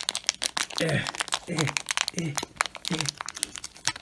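Plastic pouch packaging crinkling and crackling as it is pulled and torn open by hand, with several short voiced sounds of effort in between.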